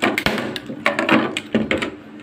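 Orange PVC conduit pipe being worked by hand against a wooden tabletop: a few sharp knocks and scrapes of hard plastic on wood, in three short clusters, near the start, about a second in and near the end.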